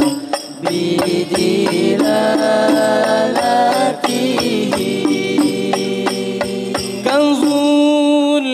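Hadroh banjari ensemble performing an Arabic sholawat: young male voices singing a melismatic line over hand-struck frame drums (terbang) beating a steady rhythm. The drums stop about seven seconds in, leaving the voice singing alone.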